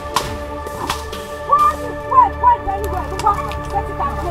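Sticks striking a thatched shack, with two sharp cracks in the first second and fainter strikes later, over steady background music.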